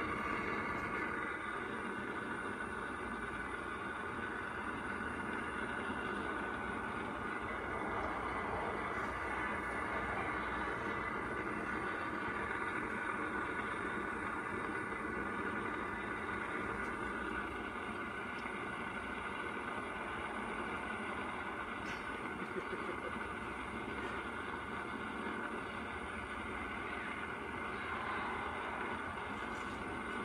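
Gas grill burner running steadily, a constant hiss under a sausage cooking on the grate.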